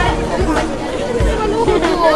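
Several young people's voices chattering at once as a group walks, with repeated low thumps on the microphone.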